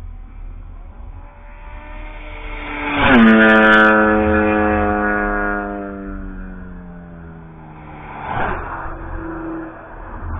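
A car at speed on the race track passes close by about three seconds in. Its engine note builds, is loudest as it goes by, then falls steadily in pitch as it pulls away. Another engine swells briefly about eight seconds in.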